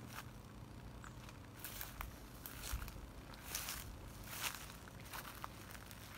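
Faint footsteps through grass and leaf litter, a few irregular soft rustling steps.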